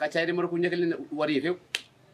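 A person talking, then a single sharp click, like a finger snap, near the end after the talk stops.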